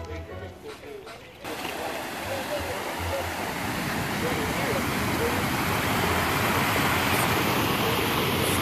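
Water rushing down a man-made rock cascade into a pond: a dense, steady rushing hiss that starts abruptly about a second and a half in and slowly grows louder. Voices are heard briefly at the start.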